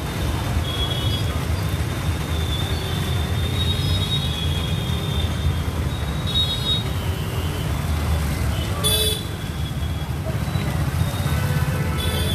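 Busy street noise: a steady low rumble of traffic and motorbikes, with faint distant horn toots and a brief shrill sound about nine seconds in.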